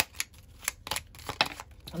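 A tarot deck being shuffled by hand, the cards making an irregular run of sharp clicks and snaps, a few each second.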